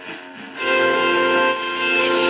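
A 1964 Zenith H845E tube table radio being tuned across the dial: a faint patch between stations, then about half a second in a station comes in playing music with held notes, loud and steady through its speaker.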